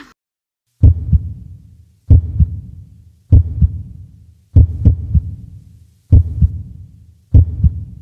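Heartbeat sound effect: slow, deep double thumps (lub-dub) repeating evenly about once every 1.25 seconds, six in all, laid on for suspense.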